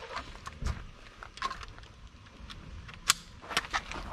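A scoped bolt-action rifle and its sling being handled: a series of small, irregular clicks and knocks, with one sharper click about three seconds in.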